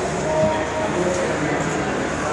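Indistinct voices over a steady rumbling background noise.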